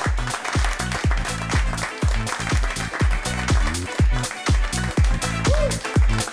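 Electronic house-style dance music played by the studio DJ on a controller, driven by a steady four-on-the-floor kick drum at about two beats a second, with a bass line and hi-hats.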